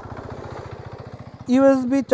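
Hero Karizma XMR 210's liquid-cooled 210 cc single-cylinder engine idling with an even pulsing beat. A man's voice starts over it about one and a half seconds in.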